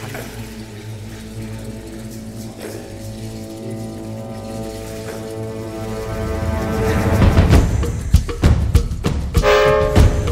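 Trailer background music: sustained held notes that swell, then louder percussion hits from about seven seconds in, with a bright held note near the end.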